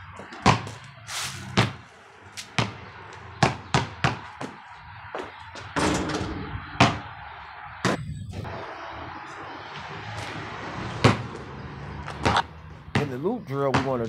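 A basketball bouncing on a concrete driveway: sharp, irregular thuds, several close together early on, then a few more after a steady noisy stretch in the middle.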